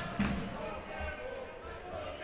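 Indistinct voices and the background sound of an ice hockey arena, with a short sharp knock just after the start.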